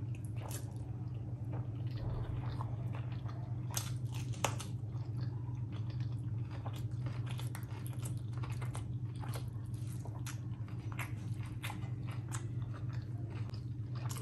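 Close-miked chewing of a mouthful of rice and fish curry, with many short wet mouth clicks and smacks, and fingers mixing rice and curry on the plate, over a steady low hum.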